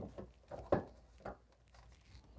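Plastic inner fender liner being pushed and flexed into place around the wheel well by gloved hands: a few short, soft knocks and scuffs, the loudest just under a second in.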